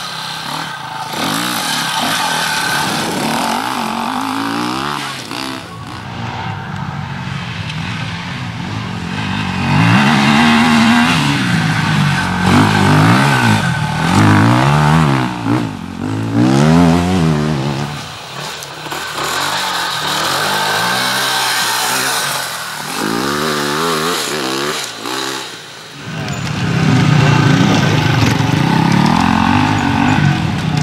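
Enduro motorcycle engines revving hard off-road, several bikes heard in turn. The pitch rises and falls over and over as the riders work the throttle up rough climbs.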